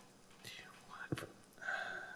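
Faint muttering under the breath, with a single key click about a second in.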